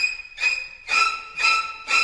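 Electronic keyboard playing a high-pitched synthesizer tone, re-struck about twice a second on much the same note: a guessed patch for the score's 'warm strings' that doesn't sound like it.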